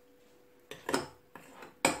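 Two metal dessert spoons clinking in a glass mixing bowl as stiff meringue is scooped out. A quick run of sharp clinks begins under a second in, with the loudest near the end.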